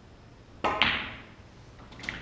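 Snooker shot: the cue tip taps the cue ball, and a fraction of a second later the cue ball clicks sharply into an object ball, the louder of the two, with a short ringing tail. A lighter knock follows near the end.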